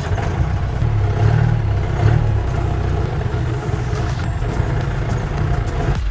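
A soft-top 4x4 jeep's engine running steadily with a low rumble as the jeep drives slowly over a rocky, bumpy dirt track.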